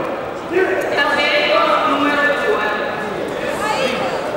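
Voices of several people talking and calling out at once in a hall, overlapping one another.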